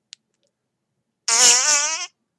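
A short, loud buzzing sound with a wavering pitch, about a second long, starting a little after a second in.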